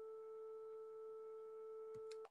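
A steady 440 Hz sine tone (the note A) from a Faust os.osc(440) wavetable oscillator, held at one pitch and heard faintly.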